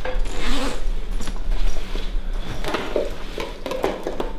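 Zipper on a black bag pulled in several short strokes, with rubbing and handling of the bag.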